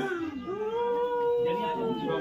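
A woman's long drawn-out wail, one held note that starts about half a second in and sinks slightly in pitch near the end: theatrical weeping in a folk drama.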